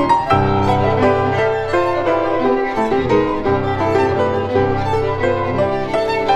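Violin and grand piano playing together in a classical duo performance: a bowed violin melody over sustained piano chords and bass notes.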